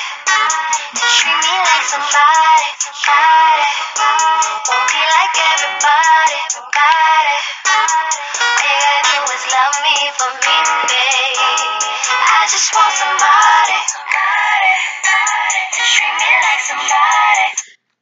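A recorded pop/R&B song playing back, with a lead vocal over backing music, cutting off abruptly just before the end.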